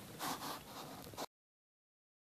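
Faint hiss of gym room noise with a few soft breathy puffs, cutting off abruptly to total silence about a second and a quarter in.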